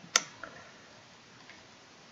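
A single sharp computer mouse click just after the start, followed by a fainter click about half a second later, over quiet room tone.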